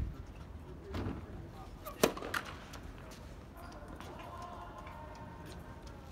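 A tennis ball bounced on a hard court a few times before a serve, sharp impacts with the loudest about two seconds in. A faint, held bird call sounds in the background later on.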